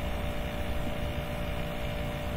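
Steady background hum with hiss, with a few faint even tones in it and no distinct event standing out.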